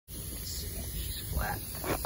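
A low, unsteady rumble on the microphone, with a brief faint voice sound about one and a half seconds in and a click at the very end.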